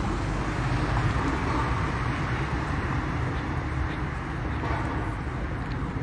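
Steady street noise with a low rumble of vehicle traffic.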